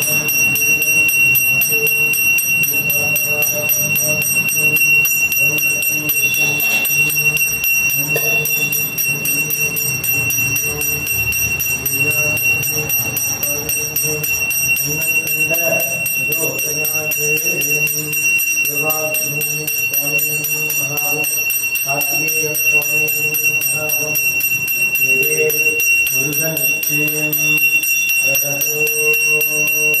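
Brass temple hand bell (puja ghanta) rung continuously as the lamp plate is waved before the idol in an arati, giving a steady high ringing. Under it, a man's voice chants in long, level tones that come and go.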